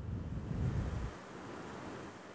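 Low rumbling handling noise for about a second as a hand fits the lid onto a plastic mixer-grinder jar and the jar is moved, then faint steady hiss. The mixer motor is not running.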